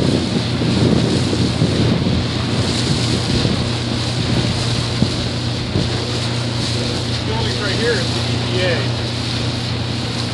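Tour boat under way: its engine runs with a steady low hum beneath wind buffeting the microphone and water rushing along the hull. Faint voices come through in the later seconds.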